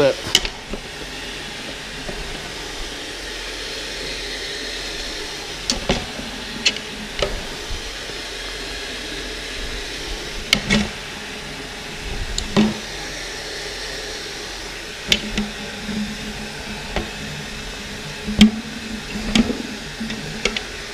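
A metal spoon knocks and scrapes against a steel mixing bowl as scoops of nougat cream are lifted out and dropped into a candy cream beater. The sharp knocks come at irregular moments, about eight in all, over a steady background hiss.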